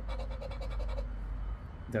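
Edge of a poker-chip scratcher rasping across a lottery scratch-off ticket in quick, repeated strokes, scraping off the coating over the numbers. A steady low hum runs underneath.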